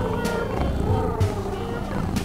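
A tabby cat making long, wavering vocal calls, over background music with a steady low beat.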